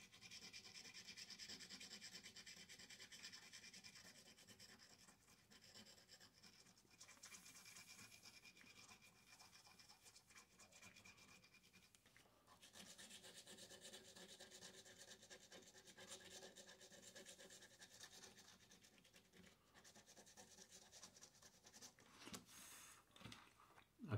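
Faint, rapid scratching as the coating of a scratch-off lottery ticket is rubbed away, with a short pause about halfway through.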